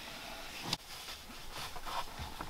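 Faint handling noise from a screwdriver being worked at the back of a car's steering wheel, with one light click about three-quarters of a second in.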